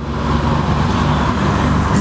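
Steady motor-vehicle engine and road noise close by, loud enough to drown out the conversation for about two seconds.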